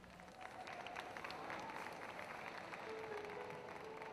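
Audience applauding, welcoming the performer onto the stage. About three seconds in, a soft held musical note starts under the clapping.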